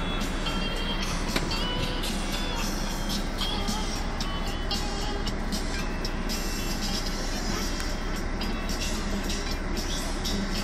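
Steady running noise inside a moving bus or tram, a constant low hum under a wash of rumble, with music playing along with it and a few short high squeaks in the first half.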